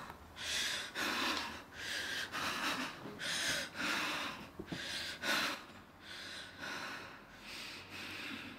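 A young woman's heavy, ragged breathing as she cries, short audible breaths coming about once or twice a second and growing quieter as she calms.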